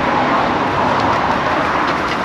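Water running from the push-button tap of a stone holy-water fountain, a steady rushing hiss.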